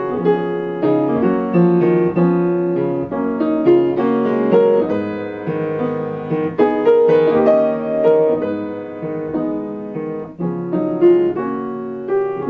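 Solo piano playing a berceuse (cradle song): a melody of frequent notes over held low bass notes.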